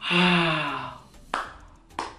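A man's long, breathy sigh lasting about a second, falling in pitch, followed a little over a second in by a single sharp clap of the hands.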